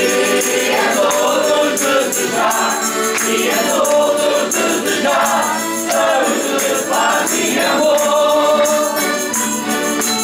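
A group of men singing a traditional Azorean folk song together, accompanied by two accordions and acoustic guitars, playing steadily throughout.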